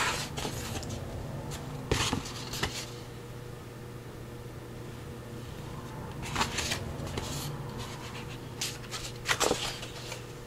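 Sheets of stiff coffee-dyed paper being handled and turned over, giving short scattered rustles and crinkles, over a steady low hum.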